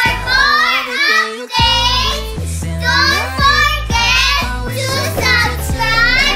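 Young girls' high voices singing and calling out in gliding phrases over backing music with a steady bass line.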